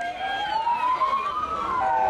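Police car sirens wailing. One tone rises slowly and turns down near the end while a second siren's tone falls across it, over low traffic noise.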